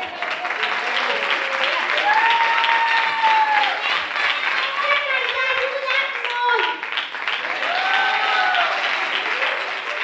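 Audience applauding, with steady dense clapping and a few long, high-pitched cheering shouts over it.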